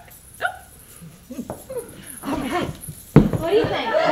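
Short high yelping vocal sounds from a performer struggling into a robe, then audience laughter breaking out suddenly about three seconds in and growing louder.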